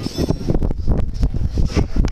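Wind buffeting the camera's microphone: a loud, irregular low rumble that surges and drops from moment to moment.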